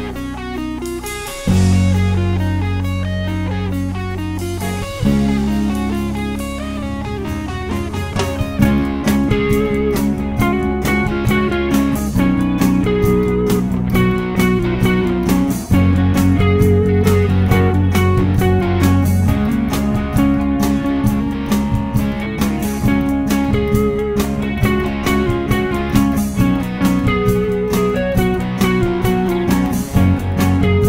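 Electric bass guitar playing a rock pumping-eighths groove, two notes to the beat, along with a rock backing track of drums and electric guitar. The first few seconds hold long notes and chords that change every couple of seconds; a steady driving beat comes in about eight seconds in.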